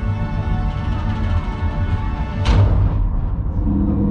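Dark, dramatic ride soundtrack music of sustained held tones over a deep, steady rumble. A sudden rushing whoosh comes about two and a half seconds in.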